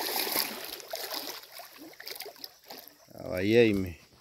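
Water splashing and trickling against the side of a wooden boat, loudest in the first second, with a few light knocks. Near the end a man calls out once, loudly, his pitch rising and falling.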